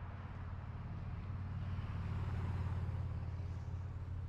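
Road vehicle running past, a low engine hum with tyre noise that builds to its loudest a little past the middle and then eases off.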